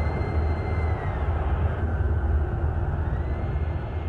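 A steady low rumble with a faint high tone over it that drops in pitch about a second in and rises again about three seconds in.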